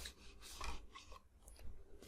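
Paperboard inner tray sliding out of a cardboard box sleeve, a faint rasping rub of card on card in two short strokes, about a second apart.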